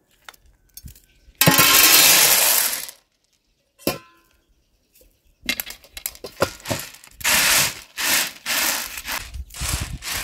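Dried chickpeas poured onto a large metal tray in one rattling rush lasting about a second and a half. A few seconds later hands spread and sift them across the tray, with short rattles and scrapes of chickpeas on metal.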